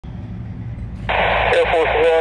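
Air traffic control radio: a low hum, then at about a second in the hiss of an airband radio channel comes on suddenly, and a controller's voice starts over it near the end.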